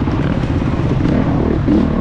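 Off-road motorcycle engine running at low speed on a rough trail, the throttle opening and closing so the pitch wavers, with a short rise in revs near the end, heard close up from the rider's helmet.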